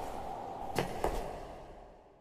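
Krone BiG X self-propelled forage harvester running as it cuts standing maize, a steady mechanical noise with a few sharp clicks. The sound fades out near the end.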